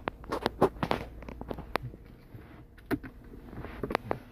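Irregular small clicks and rustles of handling around a car's centre console, densest in the first two seconds, over a faint steady low hum in the cabin.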